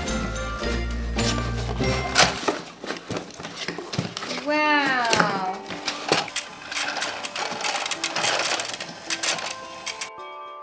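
Clicking and rattling of a plastic toy Dyson upright vacuum being handled and pushed about, its bin of loose coloured balls clattering, over background music. A brief drawn-out voice sound comes about halfway through.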